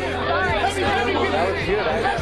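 A crowd of protesters shouting and talking over one another at close range, a dense babble of many voices facing a police line.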